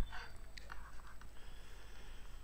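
Quiet pause with faint breath and mouth noises close to a headset microphone, a few soft clicks in the first second, and a low steady hum underneath.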